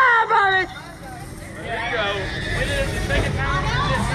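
A man's loud shout in the first half second, then indistinct talking and background chatter over a steady low rumble.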